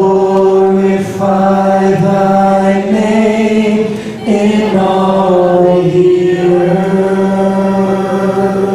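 Voices singing long held notes over a worship band's accompaniment, the sung pitch changing at about one second and again at about four seconds in.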